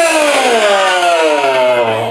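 A ring announcer's voice through a handheld microphone, holding one long drawn-out call that slides steadily down in pitch and ends near the end, in the style of a wrestler's ring introduction.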